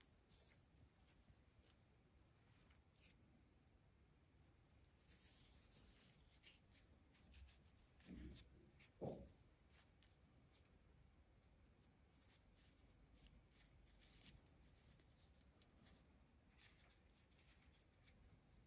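Near silence: room tone with a few faint light ticks and one brief faint sound about nine seconds in.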